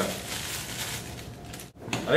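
Dry cake mix being shaken out of its bag into a glass bowl: a soft, even rustling hiss that cuts off shortly before the end.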